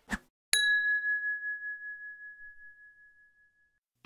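A single bell-like ding, struck once about half a second in, ringing on one clear high tone that fades away over about three seconds.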